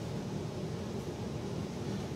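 Steady background hiss and hum of room noise, with no distinct sounds.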